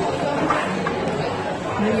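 Background chatter of diners in a busy restaurant, with a man's voice starting to speak near the end.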